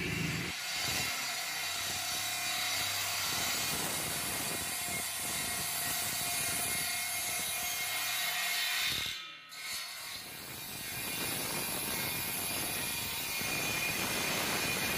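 Homemade 12-volt table saw, its blade driven by an electric car power-steering motor, running with a steady whine while cutting through a hardwood board. The sound drops out briefly about nine seconds in.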